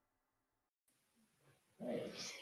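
Near silence with faint hiss, then about two seconds in, quiet room sound from the live stream cuts in.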